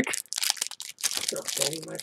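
Plastic trading-card pack wrapper crinkling and crackling in a quick run of small snaps as fingers peel it open. A short hummed voice sound comes in about halfway through.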